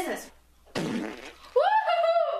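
A fart: one rough, noisy burst lasting about three-quarters of a second, around the middle.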